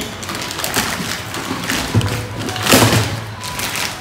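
Plastic bag crinkling and rustling as it is pulled off a cardboard shoebox, with a few light knocks and thumps of the box being handled; the loudest rustle comes a little before three seconds in.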